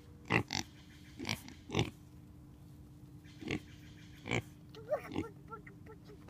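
Pigs grunting: a run of short grunts at irregular gaps, about eight in a few seconds.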